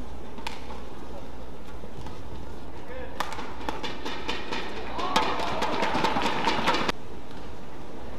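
Badminton rally: a few sharp racket strikes on the shuttlecock, then a few seconds of crowd shouting and clapping as the point is won. The crowd noise cuts off abruptly about a second before the end.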